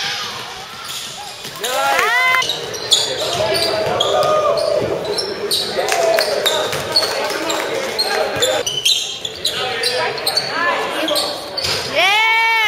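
Live basketball game sound in a gym: the ball bouncing on the court in sharp knocks, and sneakers squeaking briefly about two seconds in, over spectators' chattering voices.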